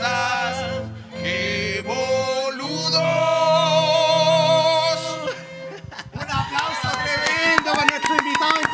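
Violin and cello playing with men singing along, ending on a long held final note that stops a little after five seconds in. Then hand clapping starts about a second later.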